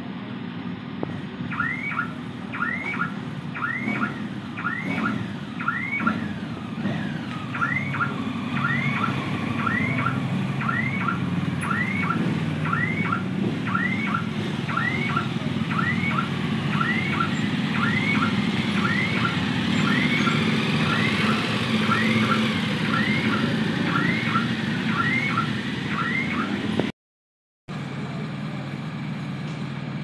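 An alarm sounding a short rising chirp over and over, a bit faster than once a second, over the low running of idling motorcycle engines. The chirping stops shortly before the sound cuts out briefly near the end.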